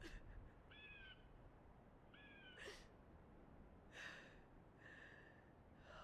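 Faint sniffs and shaky breaths of a girl crying quietly, with two short high-pitched calls about one and two seconds in.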